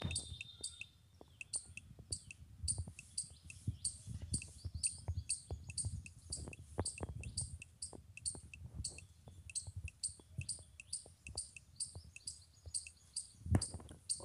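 Typing on a smartphone's touchscreen keyboard: fingertip taps with short, high key clicks, a few per second, as a phrase is entered letter by letter.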